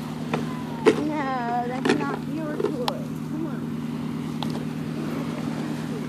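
A steady, low engine drone runs throughout. A few sharp knocks and a brief wavering voice come over it about one to two seconds in.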